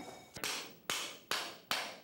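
Hammer blows: four sharp strikes about 0.4 s apart, each ringing briefly before the next.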